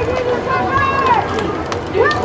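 Voices shouting and calling out across the field: drawn-out, high-pitched calls, one sliding down in pitch a little past a second in.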